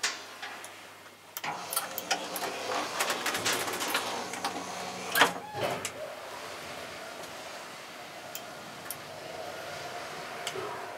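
Small elevator's door closing with a clicking rattle for a few seconds and a knock about five seconds in, then the car running with a steady motor hum.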